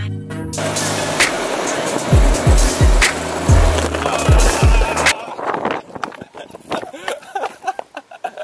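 Penny board's plastic wheels rolling fast over asphalt, a steady rolling noise under hip-hop music with deep bass kicks. The music cuts off about five seconds in, leaving the quieter rolling of the wheels over rough tarmac with small clicks and knocks.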